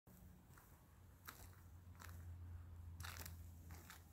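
Near silence: a faint steady low hum with a few soft crunches scattered through, the loudest cluster about three seconds in.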